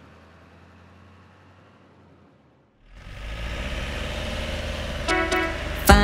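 A faint hum fades away to a moment of silence. A cartoon bus engine then starts up as a low rumble, and short horn toots come near the end.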